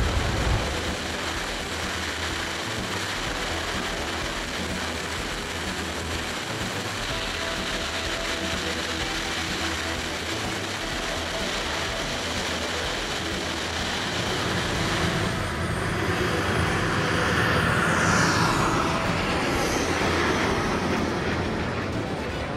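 Turbine of a large SkyMaster BAE Hawk model jet running in flight, a steady rushing roar mixed with wind noise. Later on, the sound grows louder and a high turbine whine falls in pitch as the jet passes.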